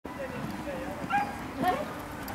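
A dog yipping twice, short high calls with bending pitch about a second and a second and a half in, over faint background voices.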